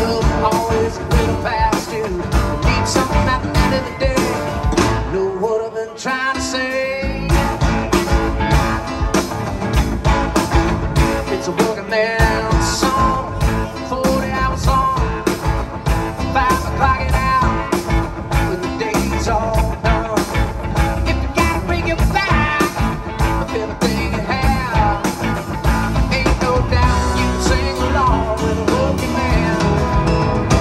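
Live rock band playing an instrumental jam with drum kit, electric and acoustic guitars and keyboard over a steady beat; the low end drops out briefly about six seconds in.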